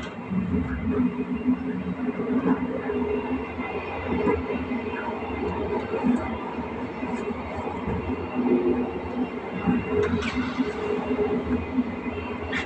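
Steady running noise of a passenger train heard from inside the moving train, with a low drone and a few sharp clicks from the wheels on the track, one pair about ten seconds in.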